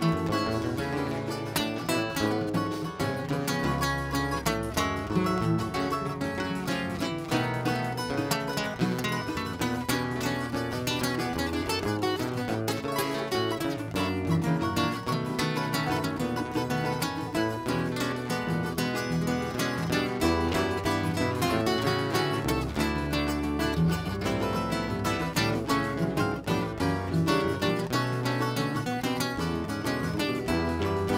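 Live Brazilian band playing an instrumental passage without vocals: seven-string guitars and cavaquinho carry the melody and strumming over drum kit, hand drum and pandeiro.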